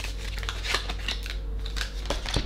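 Tarot cards being handled in the hand and drawn from the deck: a run of quick, irregular clicks and slides of card against card.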